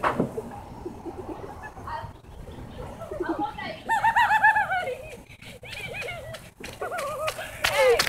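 Distant kids' high-pitched yelling and laughing, wordless, in bursts about four seconds in and again near the end, with a few scattered clicks or knocks between.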